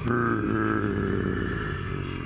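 A dinosaur's low, steady growl, held unbroken for about two seconds and easing off slightly toward the end.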